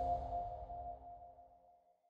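Last note of an electronic logo jingle ringing out and fading away, gone within about a second and a half.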